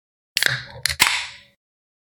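A sip of beer at the microphone: a short slurping hiss that fades over about a second, with two quick sharp clicks close together partway through.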